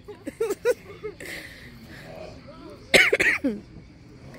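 People laughing in quick short bursts, then a single loud cough about three seconds in. The coughing comes from the burn of an extremely hot pepper-coated peanut.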